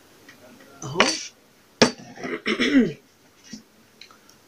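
A glass set down on a plastic tray with one sharp knock, about two seconds in, amid a few brief bits of a woman's voice.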